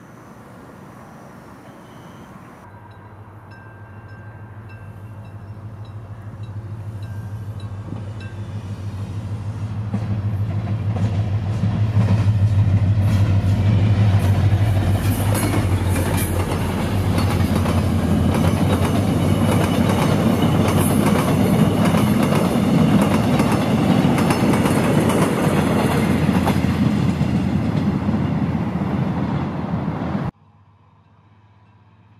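A diesel passenger train running through the station. Its low engine hum builds steadily over the first ten seconds or so and is loudest from about 12 s on, with the clickety-clack of wheels over rail joints.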